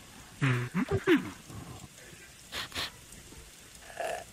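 A man's short wordless vocal sound, a grunt or groan whose pitch bends up and down, about half a second in. It is followed by two brief noisy sounds about two and a half seconds in.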